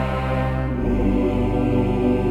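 Choral background music: a choir holding sustained chanted chords over a low drone, the harmony shifting about a second in.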